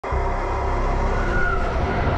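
A train passing close by: a loud, steady low rumble with high, steady squealing tones from the wheels on the rails.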